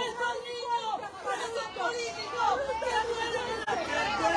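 Several people's voices talking and shouting over one another, no single phrase clear.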